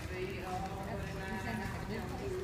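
Indistinct voices of people talking in an indoor arena, over the soft hoofbeats of several horses moving on the dirt.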